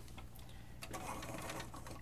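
Faint handling sounds: light clicks and rustles of hands moving a model on its display base and across a cutting mat, over a low steady electrical hum.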